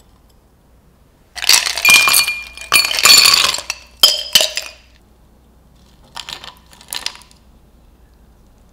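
Ice cubes tipped from a glass beaker into a glass tumbler, clattering and clinking loudly against the glass for about three seconds, followed by two short, lighter clinks near the end.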